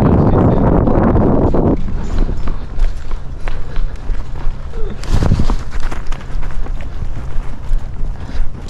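Loud rushing wind noise on a rider-worn camera while horses move fast, cutting off suddenly about two seconds in. After that come quieter, muffled hoofbeats of horses moving in arena sand, with another brief rush of noise about five seconds in.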